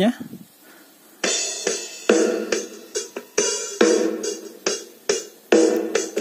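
XTM-5009 mini Bluetooth speaker playing music streamed from a phone, starting about a second in, with a steady drum beat of a little over two hits a second over sustained tones.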